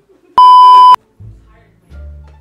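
A single loud, steady electronic bleep, about half a second long, of the kind edited in to censor a word. Music with low bass notes starts just after it.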